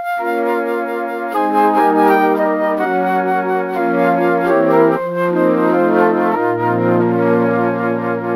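Yamaha Montage 7 synthesizer played with both hands on its Sweet Flute preset, holding a slow progression of soft, sustained chords that change about every second. A lower bass note joins about six and a half seconds in.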